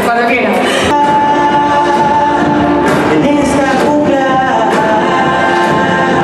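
Live band music with a singer holding long notes over keyboard and guitar.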